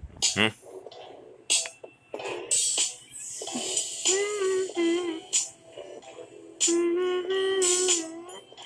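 A song playing with a voice singing long held notes, about four seconds in and again near the end.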